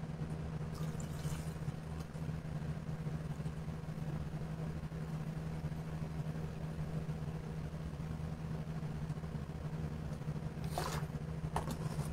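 Liquid pouring from a two-litre plastic soda bottle, over a steady low hum.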